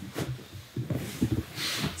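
Rustling of jiu-jitsu gi cloth and light irregular bumps of bodies shifting on the mat as two grapplers settle into position, with a brief swish of fabric near the end.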